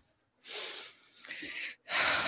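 A person breathing close to the microphone: two audible breaths about half a second long, the first about half a second in.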